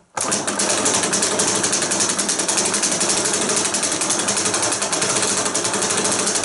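A Robert W. Paul 'Century' 35mm film projector mechanism of 1900, with its three-slot intermittent wheel, hand-cranked with film running through it: a loud, rapid, even clatter that starts abruptly a moment in and keeps a steady pace.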